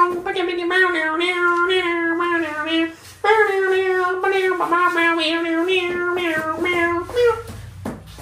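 A high voice singing on a near-steady pitch in two long phrases, with a short break about three seconds in.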